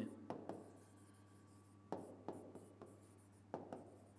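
Pen or stylus writing on an interactive display board: a handful of faint, short taps and scratches as letters are written.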